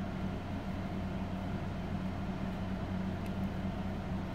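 Steady low hum of room tone, even and unchanging, with no other distinct sound.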